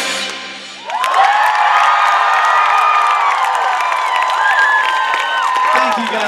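A live rock band's final chord rings out and fades. About a second in, a large concert audience breaks into loud cheering, with many high screams and whoops over it.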